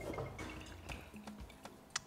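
Faint clicks and ticks of a rubber-stoppered glass conical flask of liquid being shaken and handled on a table, with a sharper click near the end, under quiet background music.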